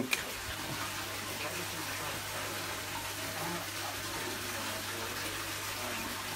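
Steady splashing of water streams falling into a large aquarium's surface, with a steady low hum underneath.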